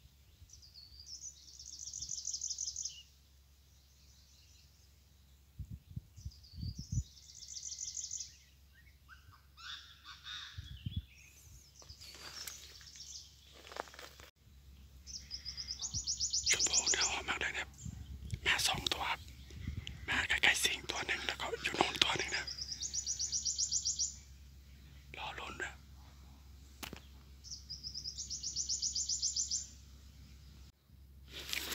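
Birds calling in scrubland, the calls of Chinese francolins lured by a decoy speaker. A high, fast-pulsed trill repeats every five to seven seconds, and louder, rough calls come in bunches through the middle stretch.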